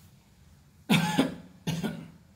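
A person coughing twice, about a second in and again near the end; the first cough is the louder.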